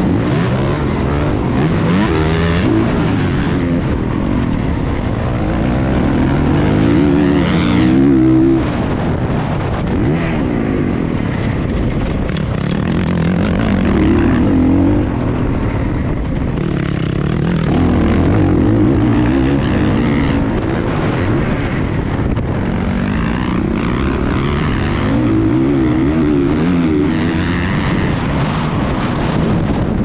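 Motocross dirt bike engine heard from on board, revving up and dropping off again and again as the rider works the throttle and gears around the track.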